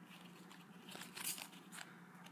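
Soft rustle of Panini Adrenalyn XL trading cards being slid off a stack and passed from one hand to the other, a few faint swishes about a second in.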